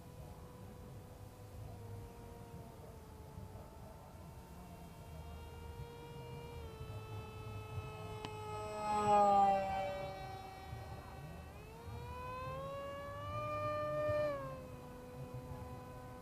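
Turnigy 2200KV brushless electric motor and propeller of an RC parkjet whining in flight during a low pass. The steady tone grows louder and drops in pitch as the plane passes close about nine seconds in, then rises in pitch and swells again later before easing off.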